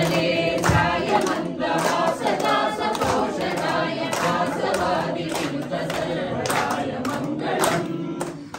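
A crowd of devotees singing a devotional chant together, with hand claps breaking in throughout.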